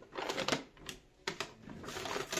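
Irregular light clicks and rustles of hands handling things among the branches under a Christmas tree, half a dozen sharp little taps with quiet gaps between them.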